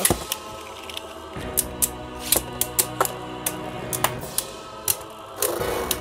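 Spinning Beyblade battle tops clashing in a stadium: irregular sharp plastic clicks and knocks as the tops hit each other, over a steady spinning hum that sets in about a second and a half in.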